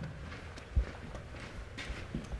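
Footsteps on a concrete floor: a few dull thuds, the loudest just under a second in.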